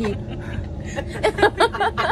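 A woman laughing in short bursts starting about a second in, over a steady low hum of a train carriage.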